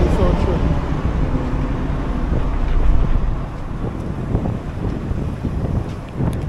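Wind buffeting the microphone of a handheld camera on a city street, with road traffic going by behind. The buffeting swells to its loudest about three seconds in, then eases.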